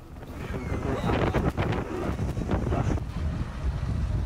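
Strong wind buffeting the microphone over rough sea, with waves breaking and washing in irregular surges.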